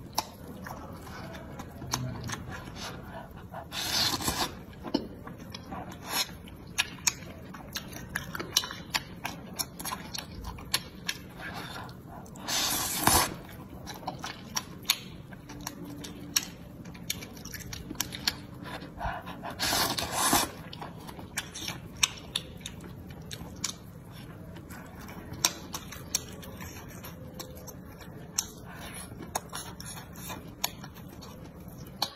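Close-up eating sounds: wet chewing and mouth clicks throughout, with three longer slurps of wide starch noodles from a spicy broth at about four, thirteen and twenty seconds in.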